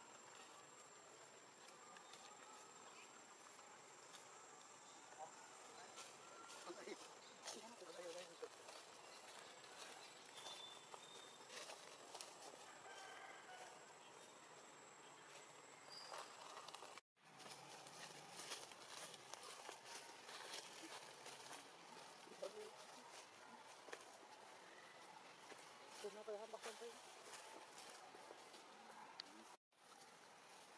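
Faint outdoor ambience: a steady high-pitched insect whine until about halfway through, scattered light clicks, and a few brief faint vocal sounds. The sound drops out twice for an instant at edits.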